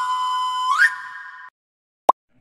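Whistle-like electronic tone of a logo sting: a steady high note that sweeps sharply upward just under a second in, then fades and cuts off about a second and a half in.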